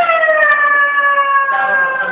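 A high human voice holding one long, loud note that starts suddenly and slowly slides down in pitch for about two seconds.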